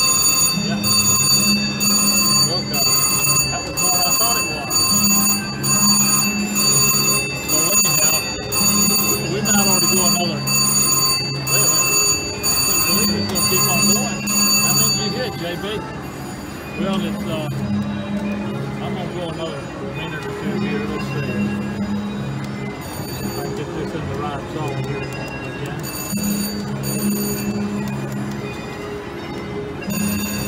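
Slot machine's bell ringing steadily as it counts up the credits of a win, stopping about halfway through. A repeating low tune runs underneath.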